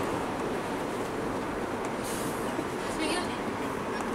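Steady road and engine noise inside the cab of a moving Mercedes-Benz Sprinter 313 CDI van, its four-cylinder diesel running at cruising speed with tyre rumble from the road.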